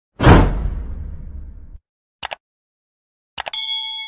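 Subscribe-button animation sound effects. A loud whoosh with a deep boom dies away over about a second and a half. Then come two quick mouse clicks, and near the end more clicks followed by a ringing bell-like notification ding.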